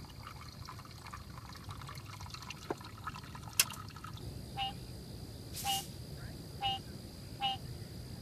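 Water trickling and dripping out of a bucket that molten thermite has burned a hole through, an uneven patter that dies down after about four seconds, with one sharp click near the middle. In the second half a short chirp repeats about once a second.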